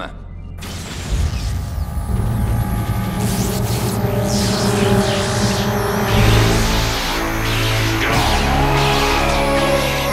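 Cartoon soundtrack: dramatic music builds under a loud energy-surge sound effect with electrical crackling. It swells over the first couple of seconds, and deep low tones come in about six seconds in.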